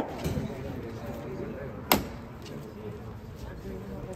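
A single sharp, loud knock about two seconds in, over a low murmur of voices, with the tail of a man's falling shout at the very start.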